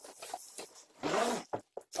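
Cardboard and plastic wrapping rustling and scraping as a plastic-wrapped metal backdrop stand is slid out of its cardboard box, louder about a second in, with a couple of short knocks near the end.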